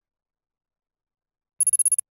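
Silence, then near the end a short, high ringing chime that pulses rapidly for under half a second: an editing sound effect for a slide changing to the next picture card.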